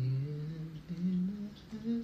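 A man humming a tune unaccompanied: a long low note held into the first moments, then a run of short notes stepping up in pitch.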